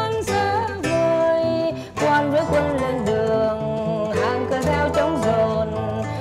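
Nylon-string classical guitar played as a lively, quick-moving accompaniment, with continuous plucked notes.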